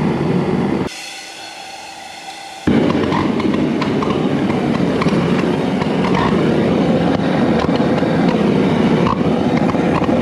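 Large gas burner torch running with a loud, steady roar of flame as it heats a steel motorcycle petrol tank. The roar drops away for about two seconds near the start, then comes back and holds steady.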